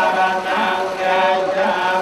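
Buddhist monks chanting together in unison, in long held notes at a steady pitch with slight rises and falls.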